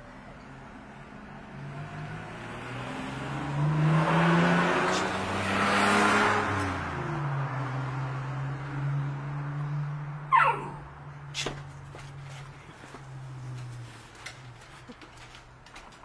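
A car passing by: engine and tyre noise swell to a peak about five seconds in, then the pitch drops as it moves away and fades to a low steady hum. About ten seconds in comes a short falling squeal, the loudest moment, followed by a knock.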